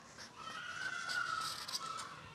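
Marker pen squeaking and scratching on kraft pattern paper as a curved line is drawn along a ruler: a thin, faint squeaky tone that starts about half a second in and holds, rising slightly, for about a second and a half.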